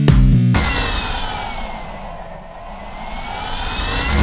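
Electronic dance track in a break: about half a second in, the beat drops out and a filtered noise sweep slides down and then climbs back up, leading into the beat's return at the end.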